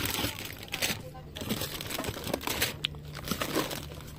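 Plastic product packets crinkling and rustling as they are handled and shifted in a box, loudest in the first second, then quieter scattered crackling.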